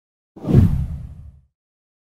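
A single deep whoosh sound effect, as used for an on-screen transition: it starts suddenly and fades away within about a second.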